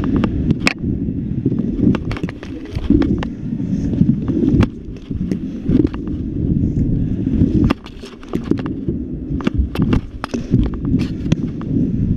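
Stunt scooter's wheels rolling over skatepark ramps: a steady low rumble broken by frequent sharp clacks and knocks as the scooter hits transitions and lands.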